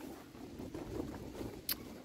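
Soft rustle of a hand brushing through and grasping dill foliage, with a single sharp click near the end.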